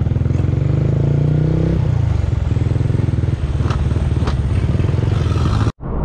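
Motorcycle engine heard from the rider's seat, running steadily and then easing off about two seconds in as the bike slows. The sound cuts off abruptly just before the end.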